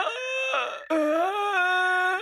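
A cartoon man's voice wailing in two long, drawn-out notes, a comic lament.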